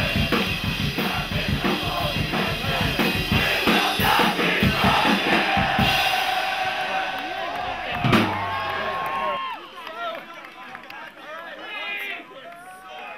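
Hardcore punk band playing loud and fast, the drum kit pounding under distorted guitars, then a held ringing note and one last crash hit about eight seconds in that ends the song. After that, voices shout and yell from the crowd.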